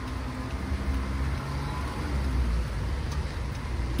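Steady low rumble of distant road traffic over a faint even hiss of light rain.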